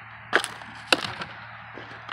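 A sharp crack about a second in, followed by a few fainter clicks, from footsteps on twigs and broken debris underfoot, over a low steady hum.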